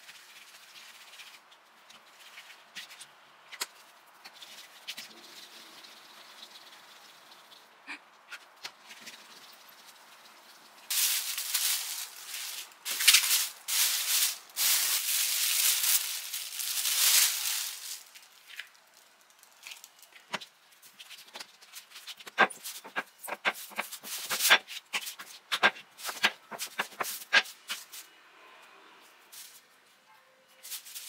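A thin plastic sheet crinkling loudly for several seconds as it is spread over balls of bagel dough, preceded by the faint rubbing of dough being rounded by hand on a silicone mat. A run of sharp crackles and taps follows.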